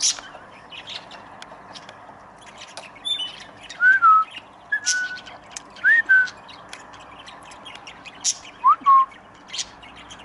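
Aviary parrots calling: short whistled notes that slide up or down in pitch, four of them between about four and nine seconds in, among many sharp, high chirps.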